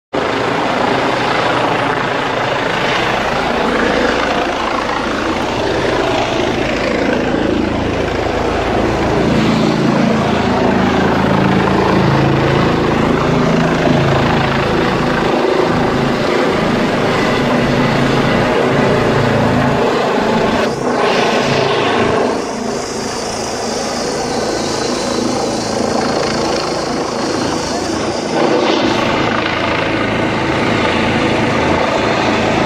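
Trauma helicopter, an Airbus EC135, flying low overhead as it comes in to land: continuous loud rotor and turbine noise, swelling as it passes closest about ten to fifteen seconds in.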